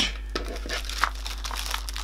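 A clear plastic packaging sleeve crinkling as it is handled, loudest in a brief rustle at the start, then a few faint rustles and a light click about a second in.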